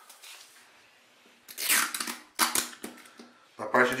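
Tissue-paper kite sail rustling and crinkling as it is slid and turned over on a table, with a loud rustle about a second and a half in followed by a few shorter crinkles.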